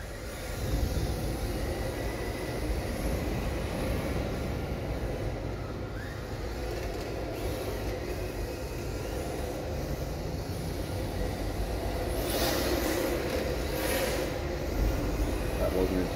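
Electric RC drift car driving and sliding on concrete: a steady hiss of hard drift tyres scrubbing over a low rumble, starting about half a second in. Two brief, louder scrubs come near the end.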